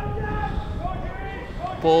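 Men's voices calling out across a football pitch over a low steady rumble, with a commentator's voice near the end.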